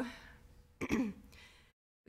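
A person clearing their throat once, a short rough burst about a second in.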